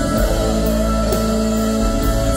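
Live band playing an instrumental passage on guitars, keyboards and drums, with a cymbal struck about twice a second.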